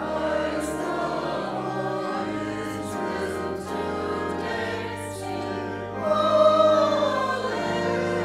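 Mixed choir of women's and men's voices singing over held organ notes, the voices coming in right at the start after a brief lull. The singing swells loudest about six seconds in.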